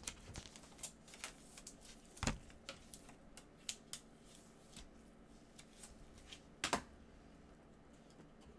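Gloved hands handling a trading card and a clear plastic card holder: scattered soft clicks and rustles of plastic and card, with two louder knocks, one about two seconds in and one near the end.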